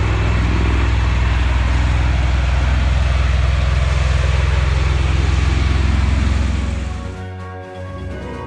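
V-22 Osprey tiltrotor flying low overhead: loud, steady rotor and engine noise with a fast low beat from the blades, fading out near the end.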